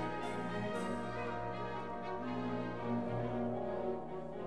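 Orchestral classical music with long held notes and chords.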